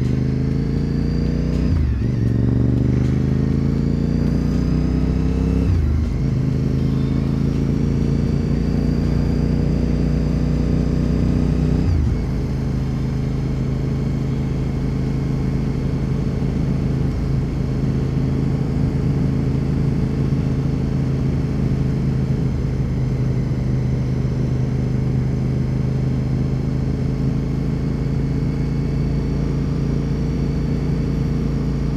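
2004 Honda RC51 SP2's 1000 cc V-twin engine pulling the bike up through the gears. The engine note climbs and drops sharply at upshifts about two and six seconds in, climbs slowly again, then falls in level about twelve seconds in and holds a steady cruise.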